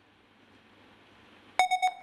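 Electronic quiz-show signal tone: after a quiet stretch, a rapid run of about four beeps in under half a second near the end.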